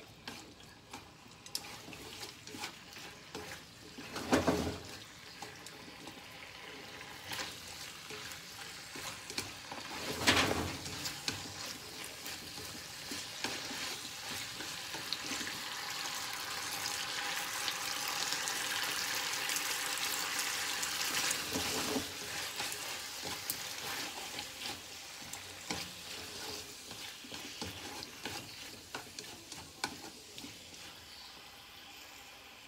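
Pork and green pepper strips sizzling in a frying pan as they are stir-fried with chopsticks, with many small clicks of the chopsticks against the pan. The sizzle swells louder in the middle, and two louder knocks come about 4 and 10 seconds in.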